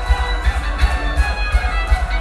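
Symphonic metal band playing live and loud through a club PA in an instrumental passage between vocal lines: driving drums with a violin line over the band.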